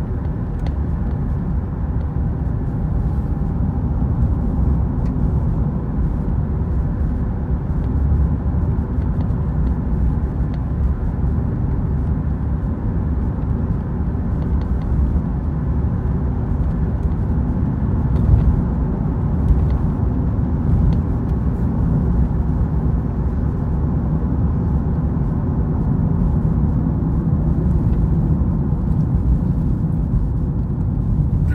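Steady low rumble of a car's tyres and engine heard from inside the cabin while cruising along a paved road.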